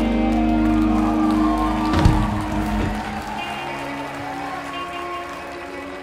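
Live rock band with electric guitars, bass and drums holding a loud chord, which ends on a sharp final hit about two seconds in. After that the bass drops out and the music turns quieter, with a clean electric guitar picking single notes.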